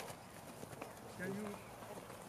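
Faint scuffs and knocks of rugby players' boots on a grass pitch as they hold a lineout lift, with a voice faintly calling 'three' a little past a second in.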